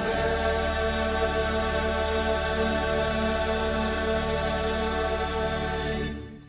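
Mixed choir of women's and men's voices singing a slow chant in long held chords, one steady chord sustained for several seconds.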